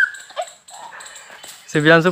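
A talking voice, broken by a pause of about a second and a half that holds only a brief high rising sound, a short low blip and faint background noise, before the talking resumes near the end.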